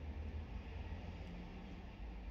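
Low, steady rumble inside a stationary car's cabin, with no distinct events.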